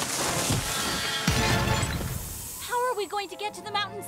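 Cartoon crash sound effect of a snow-laden tree coming down: a loud rush of noise with two heavy thuds in the first second and a half, fading out after about two and a half seconds. Short vocal cries and background music follow near the end.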